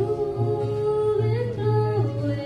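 A woman singing live, holding one long note that wavers in pitch about halfway through, over a low, steady accompaniment.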